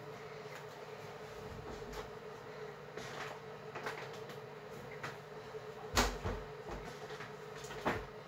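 Faint rustles and bumps of someone moving about and handling clothes, with a sharp knock about six seconds in and another near the end, over a steady hum.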